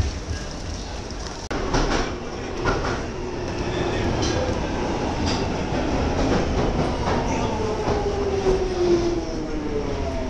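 London Underground train heard from inside the carriage: a steady running rumble with rail clatter. From about two-thirds of the way in, a whine falls steadily in pitch as the train slows for a station.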